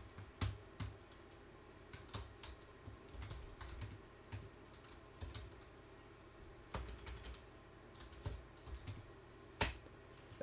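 Computer keyboard typing in light, uneven keystrokes as a terminal command is entered, with a louder key press near the end.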